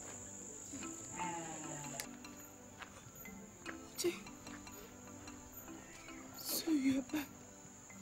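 Crickets chirring steadily in a high pitch at night, under soft background music, with a few brief voice sounds; the loudest of them comes about a second before the end.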